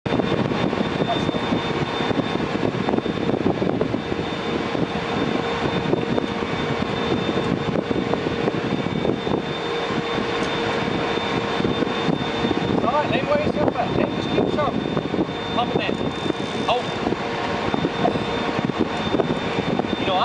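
Boat engine running steadily with a constant rush of wind and water, and faint, unclear voices in the second half.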